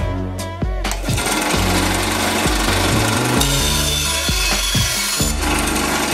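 Small benchtop band saw cutting through a thick block of pine, a steady cutting noise that starts about a second in and grows brighter in the middle, over background music.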